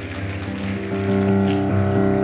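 Sustained keyboard chords held steady as background worship music, with a faint patter of congregation applause underneath.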